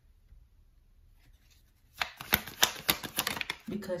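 A tarot deck being shuffled by hand: a quick, dense crackle of card edges lasting under two seconds, starting about halfway in after a quiet stretch.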